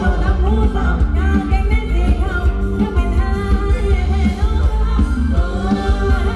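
A live band playing Thai ramwong dance music, with a singer over a heavy bass and a steady beat.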